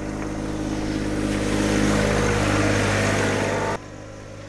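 John Deere 1025R compact tractor's three-cylinder diesel engine running steadily while pushing wet snow with its front blade, growing louder as it comes closer, with a rising hiss of snow and blade over the pavement. Near the end the sound drops abruptly to a quieter, more distant engine.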